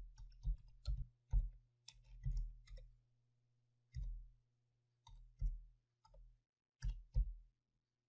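Computer keyboard typing: irregular runs of keystroke clicks with soft low thuds, broken by short pauses of about a second.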